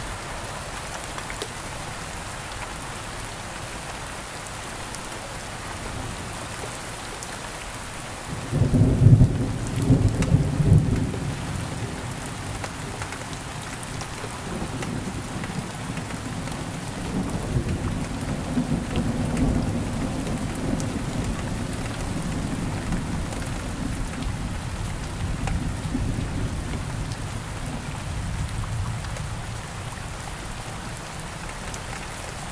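Steady rain falling, with a loud clap of thunder about eight seconds in that breaks into a long low rolling rumble and slowly fades.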